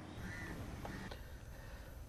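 Faint outdoor background sound with a distant bird calling.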